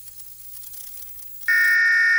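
A faint hiss, then about one and a half seconds in a loud, steady electronic beep tone that starts suddenly and holds for just under a second: an edited-in sound effect.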